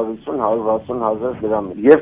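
Speech only: a man talking continuously over a telephone line, his voice thin and narrow as through a phone.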